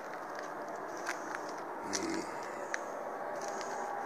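Steady, fairly quiet outdoor background noise with a few faint light clicks.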